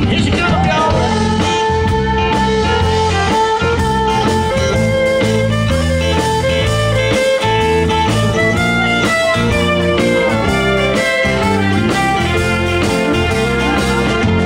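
Live country band playing an instrumental break: a sustained lead melody with bending notes over guitars, bass and a steady drum beat.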